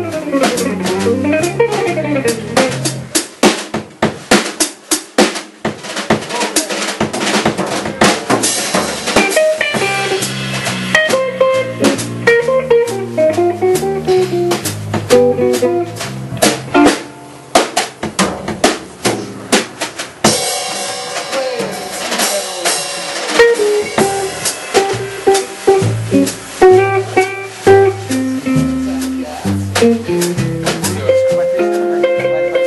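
A jazz trio playing live, in a bossa nova and samba style: a Gibson L5 archtop guitar, a five-string electric bass and a Pearl drum kit. The drums are to the fore with busy snare and rimshot strokes, and about three seconds in the bass drops out for a few seconds while the drums carry on.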